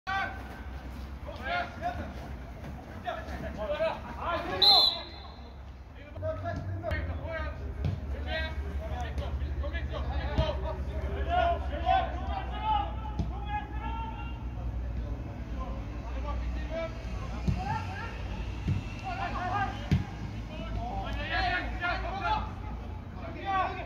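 Football players' voices calling and shouting across an outdoor pitch, with several dull thuds of the ball being kicked. A loud sharp sound about five seconds in, and a low rumble from about six seconds on.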